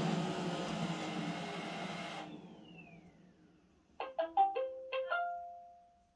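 iRobot Roomba robot vacuum settling on its charging dock: its motors run, shut off about two seconds in, and spin down with a falling whine. About four seconds in, a short melody of about six electronic chime notes plays, the robot's docking tune.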